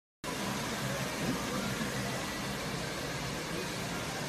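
Steady hiss of background noise, with a faint murmur of distant voices underneath.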